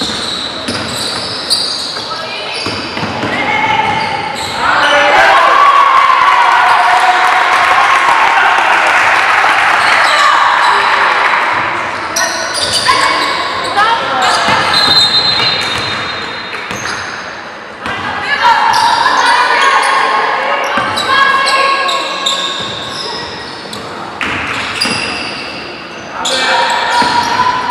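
A basketball game in an echoing sports hall: the ball bouncing on the court floor amid loud shouting voices that swell and fade through the play.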